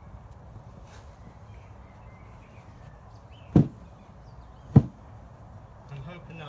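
Two sharp thumps about a second apart, a sheet holding a honeybee swarm being jolted to shake the clustered bees down into the bottom of it.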